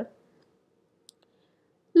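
Quiet room tone with one short, sharp click a little past the middle, the click of a computer control advancing the presentation slide.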